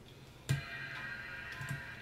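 MacBook Pro startup chime: a single chord that comes in suddenly about half a second in and rings on, slowly fading, as the machine boots after a restart.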